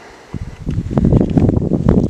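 Wind buffeting the camera's microphone: a loud, low rumble that starts about a third of a second in and builds within the first second.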